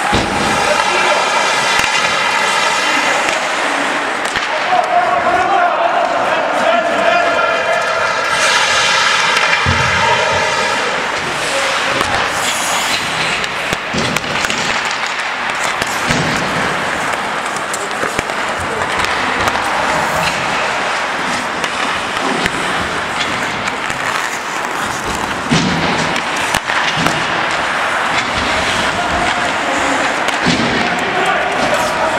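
Ice hockey play in an indoor rink: skate blades scraping the ice and sticks and puck clacking, heard as many short knocks over a steady hiss. Voices shout through the hall.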